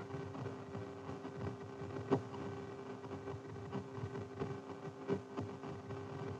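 Audio Doppler return from the AN/TPS-25 ground surveillance radar's loudspeaker: faint, irregular crackling and clicks over a steady hum. It is the background noise of wind-moved vegetation such as branches and tall grass, not a moving target.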